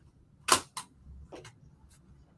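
A sharp click about half a second in, then a few fainter clicks: small objects, a nesting reed and a thin probing rod, being set down on a desk.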